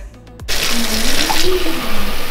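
Kitchen faucet running a steady stream of water into a drinking glass, starting about half a second in.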